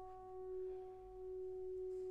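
French horn holding one soft, steady note: the sustained close of the overture's opening horn call.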